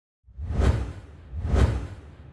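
Two whoosh sound effects about a second apart, each with a deep bass swell, from an animated logo intro; the second fades out slowly.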